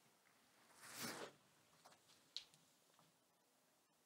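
Near silence: room tone, with a brief faint rustle of clothing about a second in as a person gets up out of a chair, and one faint click a little later.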